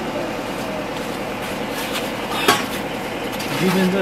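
Metal blade of a long-handled digging tool scraping and striking wet, stony mud, digging out around a car wheel stuck in mud, with scattered clinks and one sharp clink about two and a half seconds in.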